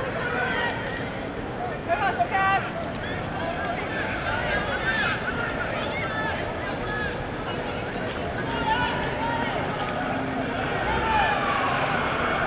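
Indistinct, overlapping voices of players and onlookers calling out across an open field, with a few louder short shouts about two seconds in.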